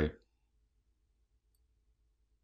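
The last syllable of a man's narration, then near silence: room tone.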